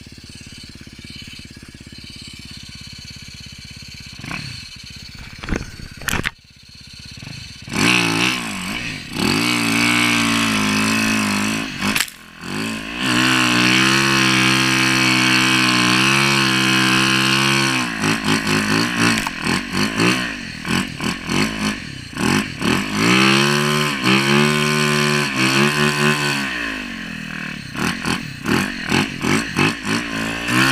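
Yamaha YZ450FX snow bike's single-cylinder four-stroke engine running low at first, then from about eight seconds in revving hard and holding high throttle for several seconds, followed by a string of short throttle blips as it pushes through deep powder.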